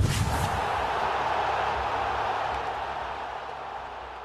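Sound effect of an animated logo end card: a sudden hit with a low thump, followed by a long rushing wash that slowly fades.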